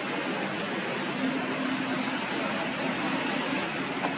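Steady, even hiss of outdoor background noise with a faint low hum underneath, holding at one level with no distinct sound events.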